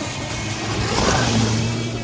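Volkswagen Golf Mk3 estate passing close at speed, its engine revving hard, with a rushing noise from the tyres spraying dirt and leaves that swells and is loudest about a second in.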